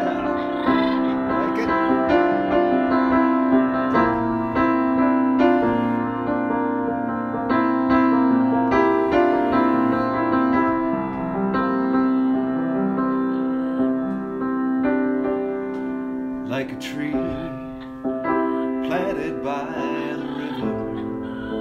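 Keyboard playing a song's introduction in sustained chords that change every second or two. Near the end a few short wavering vocal sounds come over it.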